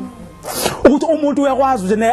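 A preacher's voice in a sermon. About half a second in comes a short hissing burst of noise that ends in a sharp click, and then the speech resumes.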